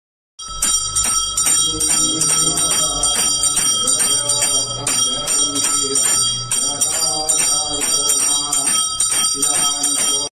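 Bells ringing in a rapid, steady run of about four strikes a second, with a sustained high ringing tone, starting about half a second in. Voices can be heard underneath.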